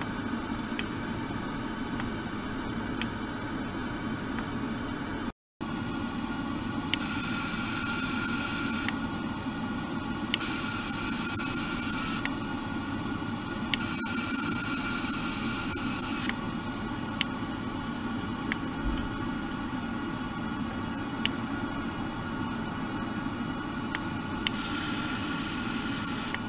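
Steady hiss, with four bursts of louder buzzing hiss, each about two seconds long, as a handheld sonic vibration device runs with its tip in a jug of water.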